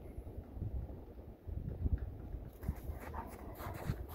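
Dogs playing in snow: brief whimpers and paws scuffling in the snow, busier in the second half, over a low wind rumble on the microphone.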